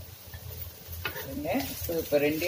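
Wooden spatula stirring grated coconut into chopped radish frying in a non-stick pan, with a faint sizzle. A voice starts speaking about a second in.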